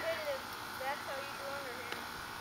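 Faint voices of children talking at a distance, in short bits with pauses between them.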